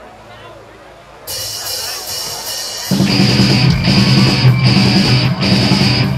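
Heavy metal band playing live with distorted guitars, bass and drum kit. After a quiet opening second, a bright wash comes in about a second in, and the full band enters loud at about the halfway point.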